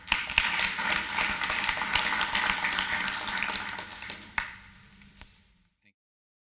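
Audience applauding at the end of a talk. It starts at once, holds loud for about four seconds, then fades out.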